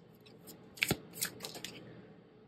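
Stiff tarot cards being handled as a card is drawn from the deck: a few crisp snaps and slides of card on card, the sharpest about a second in.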